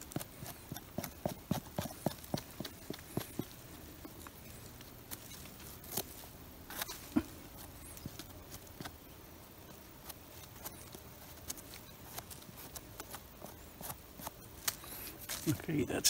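Small knife scraping and trimming the soil-caked base of a bolete's stem: a quick run of short scrapes and clicks in the first few seconds, then occasional single scrapes.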